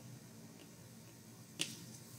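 Quiet room tone with a single short, sharp click about one and a half seconds in.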